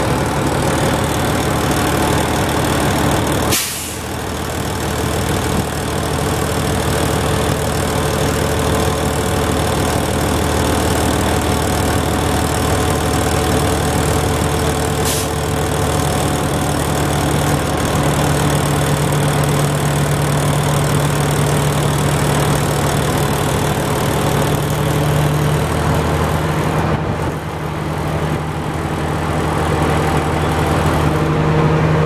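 Dump truck engine running steadily to power the hydraulic hoist as the dump bed is raised. There is a sharp click a few seconds in and a fainter one about halfway.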